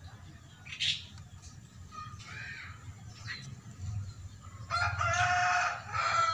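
A rooster crowing near the end, one long call with a shorter tail; a few brief, fainter calls come before it.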